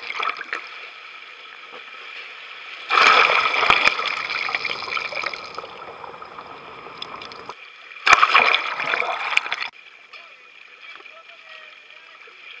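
Water rushing and splashing over a waterproofed action camera as it is pulled through the sea and breaks the surface. It comes in two loud stretches, starting about three seconds in and again about eight seconds in, each starting and stopping abruptly, over a steady, fainter water wash.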